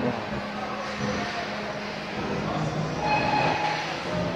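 Steady hum and hiss of a supermarket interior, with a faint background voice or tone briefly rising about three seconds in.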